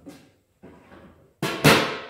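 Stainless steel lid of a Rec Teq Bullseye grill swung shut on its hinge onto the grill bowl, closing with a loud metallic clank. There are two hits about a quarter second apart, the second the louder, and it rings briefly. Light handling noise comes before it.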